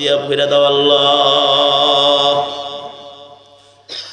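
A man's voice chanting one long held note of a prayer of supplication into a microphone. The note fades away from about two and a half seconds in.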